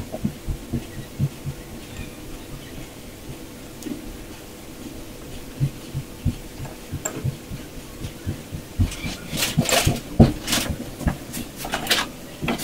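Kitchen handling noise while onion rings are separated and laid on a dish: soft, irregular low thumps, then a cluster of sharper clicks and rustles about nine seconds in.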